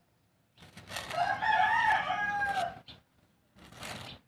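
A rooster crowing once: a single long call of about two seconds. Near the end come short scrapes of a small metal scoop working soil in a tin can.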